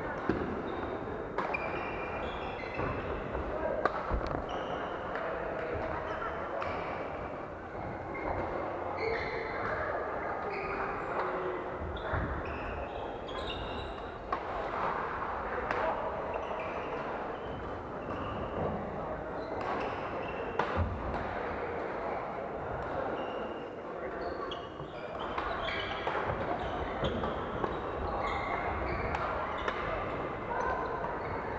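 Badminton play in a large hall: repeated sharp racket strikes on shuttlecocks and short squeaks of shoes on the wooden court floor, over a constant murmur of players' voices, all with hall echo.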